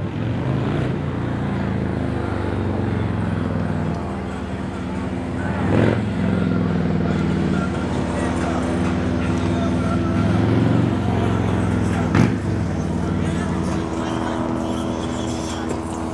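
An engine running steadily, its pitch drifting slowly up and down, with two sharp knocks about six seconds apart.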